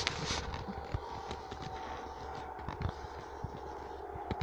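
Quiet background with scattered small clicks and rustles from a handheld phone being handled, over a steady low hum.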